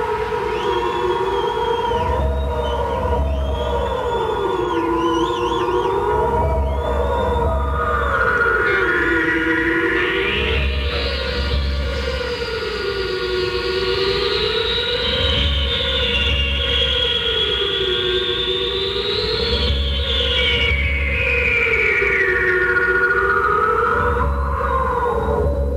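Spacey electronic synthesizer sound effects: swooping tones that dip and rise about every two and a half seconds over a pulsing low throb. A high, whining layer climbs in about eight seconds in, holds, and slides back down near the end.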